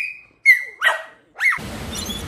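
Staffordshire bull terrier giving four short, high-pitched excited yips, the dog's excitement at being called for a walk. About a second and a half in they give way to a steady outdoor hiss.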